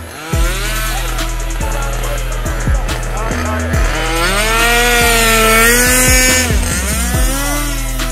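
Background music with a steady drum beat. About four seconds in, the high motor whine of an electric RC buggy rises and falls over about three seconds as it drives past close by.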